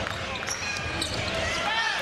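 A basketball being dribbled on a hardwood court, with arena crowd noise underneath.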